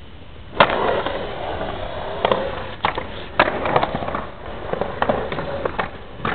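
Skateboard dropping into a skatepark bowl: a sharp clack about half a second in, then the wheels rolling steadily with several more clacks and knocks over the next few seconds.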